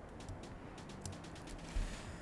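An irregular run of small, quick plastic clicks from a computer mouse and keyboard in use, with one louder low thump against the desk near the end.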